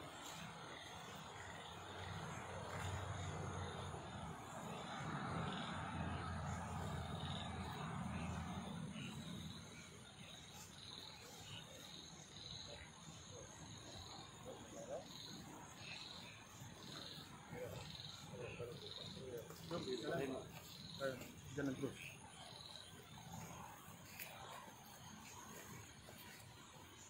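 Night insects chirping in a steady rhythm, a little over one chirp a second, under a low rumble that fades out about ten seconds in. Brief louder murmurs like low voices come about twenty seconds in.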